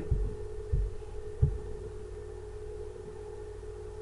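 A steady low hum from the recording setup, with three soft low thumps in the first second and a half.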